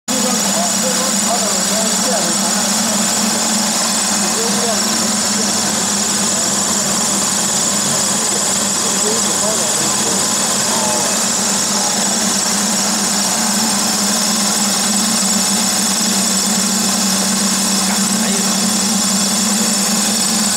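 Feed extruder making floating pellets, running steadily under load: a continuous low hum with a loud steady hiss over it, unchanging throughout.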